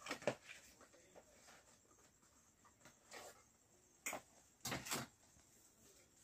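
Faint handling noise of a cardboard fireworks box being turned over in the hands: a few short knocks and rustles near the start, then a cluster of louder clicks about four to five seconds in.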